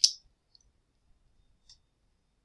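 Computer mouse clicks: one sharp click at the start, then a faint tick and a second small click near the end.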